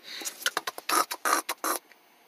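Soft handling noises from a plush toy being moved about by hand: about five quick rustles and light taps, roughly three a second, stopping near the end.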